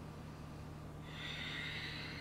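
A person breathing out: a long, soft, breathy exhale that starts about halfway through, over a steady low hum.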